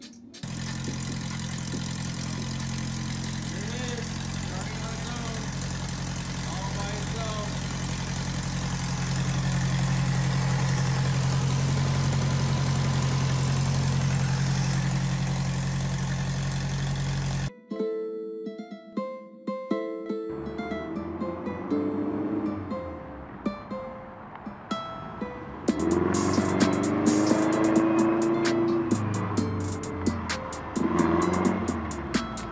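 Air-cooled flat-four engine of a VW Beetle running steadily, just back in running order after its clogged carburettor jet was cleared; it grows louder about nine seconds in. It cuts off suddenly past the middle and outro music takes over.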